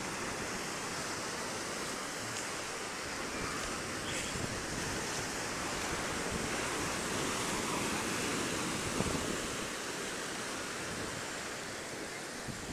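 Ocean surf breaking and washing up on a sandy beach: a steady, continuous rush of waves.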